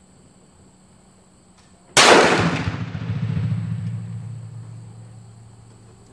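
A single shot from a Hatfield single-shot break-action 12-gauge shotgun firing a rifled slug, about two seconds in: a sharp, loud report followed by a long, low rumbling echo off the covered firing line that fades away over about three seconds.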